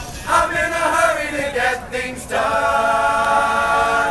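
All-male a cappella group singing in harmony, several voices together; a little over two seconds in they settle onto a long held chord.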